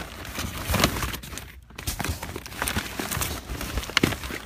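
Cardboard firework boxes being shifted and rummaged through by hand: rustling and scraping of cardboard with scattered knocks, the sharpest knock right at the end.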